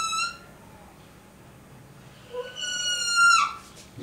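Whiteboard marker squeaking as it draws a curve on the board: a high, steady squeal that ends just after the start, then a second squeal of about a second, starting about two and a half seconds in.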